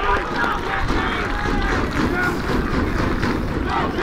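Wind buffeting the microphone in a steady low rumble, with distant, indistinct shouts from players and spectators on a football pitch.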